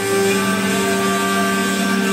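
Sustained folk-music drone from the band's instruments, a hurdy-gurdy among them: a low note with another an octave above, held steady without any beat.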